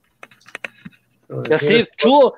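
A short run of quick, light clicks of typing on a computer keyboard, picked up over the call, then a voice starts talking near the end.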